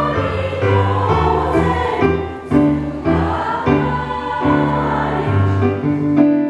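Mixed choir singing a traditional Japanese song in held, smoothly changing chords, accompanied by an electronic keyboard.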